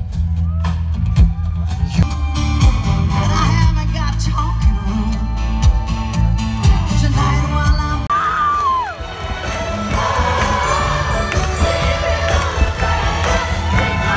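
Live concert music from a bandshell stage over loudspeakers, picked up by a phone amid the audience: a bass-heavy passage with steady drum hits, then after an abrupt change about eight seconds in, a lighter passage with singing and whoops from the crowd.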